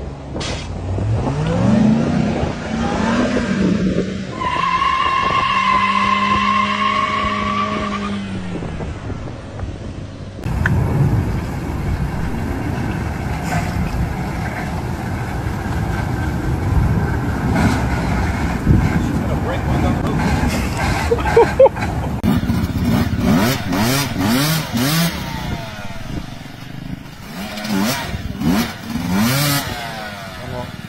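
Ram pickup's engine revving with rising pitch, then a steady high whine for a few seconds, which the caption takes for the transmission blowing up. After a cut, other vehicles run, with sharp clicks and knocks near the end.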